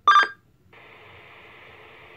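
A short electronic beep from a Kenwood two-way radio, then a steady hiss of radio static from its speaker.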